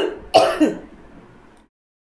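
A woman clearing her throat once, a short rough burst that fades out within about a second.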